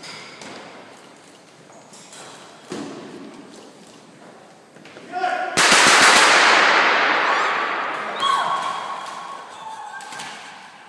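A sudden burst of rapid automatic gunfire about halfway through, loud and ringing on for a few seconds in a large hard-walled hall. People cry out just before and after it.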